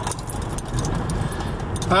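Steady low road and engine rumble of a car driving, heard from inside the cabin, with faint light rattling clicks over it.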